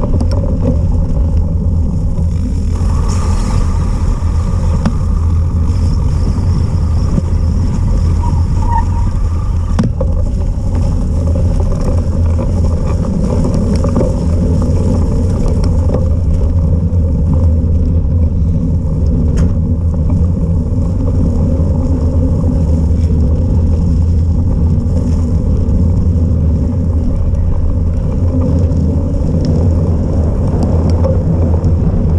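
Steady, loud low rumble of wind and rolling buffeting on the microphone of a bike-mounted camera as a cyclocross bike is ridden fast over a path, with faint ticks and rattles from the bike.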